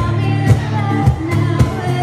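Live acoustic trio playing a pop song: a voice singing over guitar, piano and a steady percussion beat of about two hits a second.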